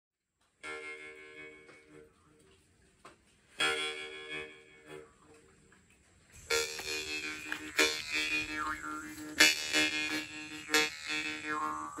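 Deep baritone jaw harp (a Dimitri Glazyrin 'Alpha' vargan) being played: a single plucked note rings and fades just after the start, another comes about three and a half seconds in, and from about six and a half seconds it plays continuously, with sharp plucks over a steady low drone and overtones sweeping up and down as the mouth shapes them.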